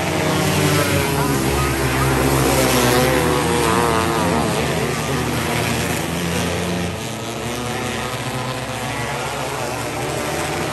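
Several winged 500-class micro sprint cars racing on a dirt oval, their engines revving hard with the pitch swinging up and down as they pass. Loudest about one to three seconds in, easing off toward the end.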